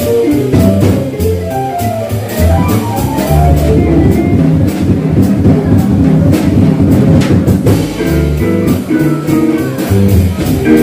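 Live jazz from a small band at a jam session, playing continuously with a steady beat.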